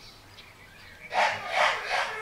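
English bulldog puppy snuffling: two short, noisy breaths through the nose in quick succession about a second in.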